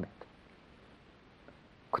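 Near silence: studio room tone during a pause in a woman's speech, with the end of one phrase at the start and the next phrase beginning near the end.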